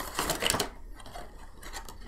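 Cardboard box and plastic insert of a Funko Pop vinyl figure being opened by hand: a burst of rapid crackling and rustling in the first half-second, then quieter scattered clicks of handling.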